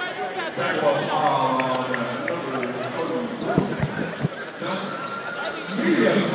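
A basketball bouncing a few times on a hardwood court about halfway through, short dull thumps against the chatter of voices in the gym.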